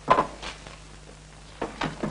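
Knocks and scrapes of a wooden office cabinet drawer being handled: a loud clatter at the start, a lighter knock about half a second in, and two more knocks near the end.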